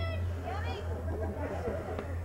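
Background chatter of spectators on the sideline, voices overlapping, over a steady low hum.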